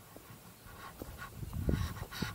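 A hiker's hard, panting breaths, short and repeated, close to the microphone. A low rumble on the microphone swells near the end.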